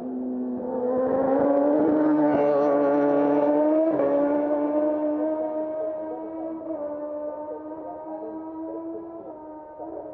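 Racing motorcycle engine on the TT course, loudest about one to four seconds in as it goes past. Its note shifts suddenly near the peak, then holds steady and slowly fades as it pulls away.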